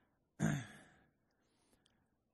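A man's short sigh about half a second in: a breathy exhale that turns voiced and falls in pitch.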